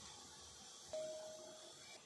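Mostly near-silent room tone. About a second in, a steel spoon strikes the stainless-steel pressure cooker once, giving a faint single ringing note that fades out within about a second.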